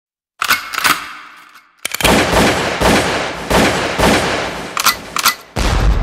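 Two sharp bangs with a long fading tail, then a dense, loud run of cracks and bangs about two a second. A deep low boom comes in near the end.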